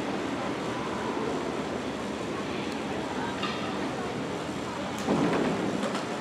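General murmur of voices and hall noise around a velodrome start line, steady throughout. About five seconds in there is a sharp click, followed by a brief louder burst of voices.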